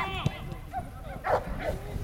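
Short shouts and calls from players on a football pitch during open play: a brief cry at the start and another about a second and a half in, over outdoor wind rumble.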